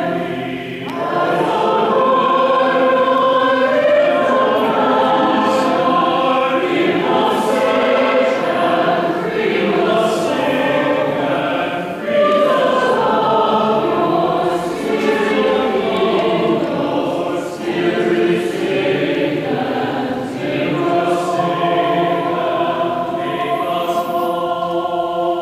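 Choir singing a sacred piece in continuous phrases, with brief breaths between lines.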